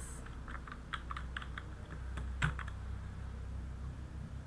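Computer keyboard typing: irregular key clicks as a word is typed, with one louder keystroke about two and a half seconds in.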